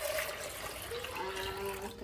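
Water poured from a bowl into a metal saucepan: a steady splashing gush that tapers off near the end.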